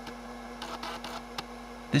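Toshiba PC card floppy drive reading while the Libretto 100CT boots MS-DOS from floppy disk: a steady motor hum with a few faint head clicks and a short rattle of seeking about a second in.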